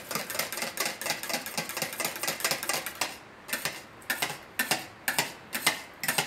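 Wire balloon whisk clicking against a stainless-steel bowl while mixing vanilla crème anglaise into whipped cream. The strokes come fast at first, then settle to about three a second.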